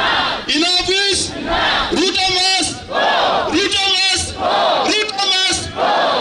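A rally chant in call and response: a man shouts through a microphone and PA, and a crowd shouts back. The exchange repeats in a steady rhythm about every one and a half seconds.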